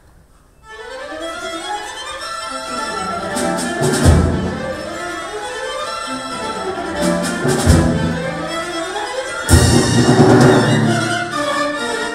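Accordion with a small string orchestra and drum kit starting to play, about a second in, with the bowed strings prominent. A few heavy low accents punctuate the music.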